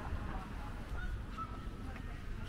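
A few short bird calls, about a second in and twice more near the end, over a steady low rumble.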